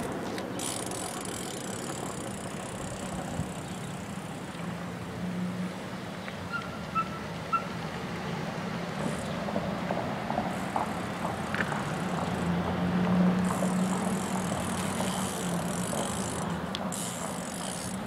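BMX bikes riding on pavement: a steady rolling noise with a low hum, scattered clicks and knocks, and a few faint short chirps about seven seconds in.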